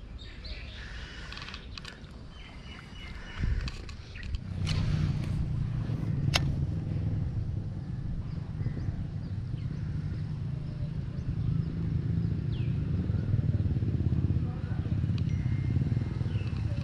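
A steady low rumble that starts about four seconds in and carries on, with a single sharp click a couple of seconds after it starts.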